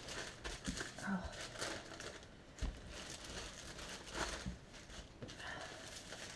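Baking paper crinkling and rustling in irregular strokes as a rolling pin rolls pastry out between two sheets, with a soft knock about two and a half seconds in.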